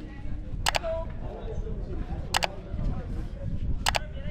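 Camera shutter firing three times, each a quick double click, about a second and a half apart, over faint background voices.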